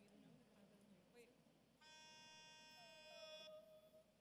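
Near silence, then a faint steady note with many overtones sounds for about a second and a half and cuts off suddenly, while a voice hums softly to match it: the starting pitch being given to the choir before the anthem.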